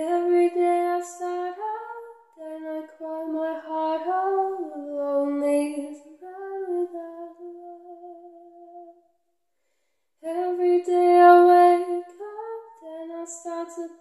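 A woman singing a slow ballad unaccompanied, holding long notes, with a silent pause of about a second before the next line.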